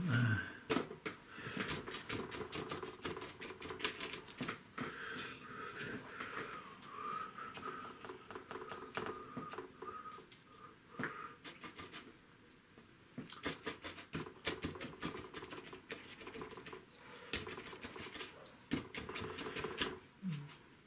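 Irregular taps and scratches of a worn bristle brush dabbing acrylic paint onto gessoed paper to build texture, several strokes a second in clusters with short pauses.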